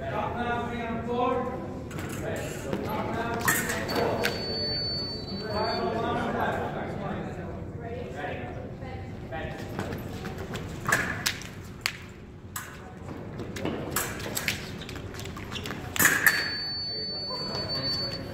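Fencing bout: sharp clicks and knocks of blade contact and footwork on the strip, with the electric scoring machine sounding a steady high beep for a touch about four seconds in and again near the end.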